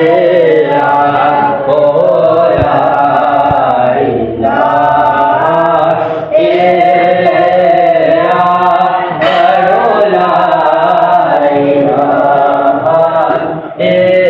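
Several voices chanting a prayer together in a sung, melodic style, in phrases of a few seconds each with brief breaks between.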